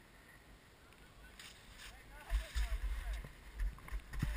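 Skis scraping and sliding on packed snow as the skier starts to move, with wind buffeting the helmet camera's microphone in loud gusts from about two seconds in.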